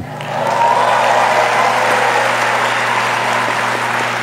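Audience applauding: the clapping builds within the first second, then holds steady, easing slightly toward the end.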